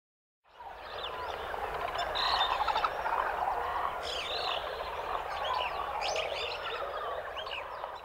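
Nature ambience: a dense chorus of frogs with many short bird chirps and whistles above it, fading in after about half a second of silence.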